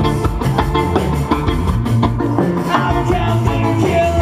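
Rock band playing live: electric guitars, bass and drum kit, recorded from the audience.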